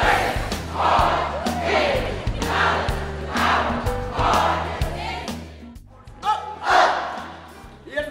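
A large group shouting a rhythmic cheer in unison, one shout about every second, in a big echoing hall over music with a steady bass beat.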